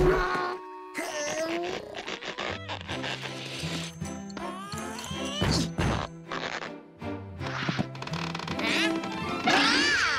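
Cartoon background music with comic sound effects: a loud hit right at the start, quick gliding tones through the middle, and a rising and falling glide near the end.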